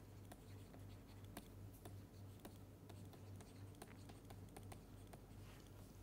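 A stylus writing on a tablet screen, heard faintly as irregular small taps and scratches over a low steady electrical hum.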